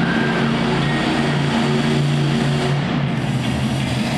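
Monster truck's supercharged V8 engine running at a steady pitch, heard from the stands of an indoor arena.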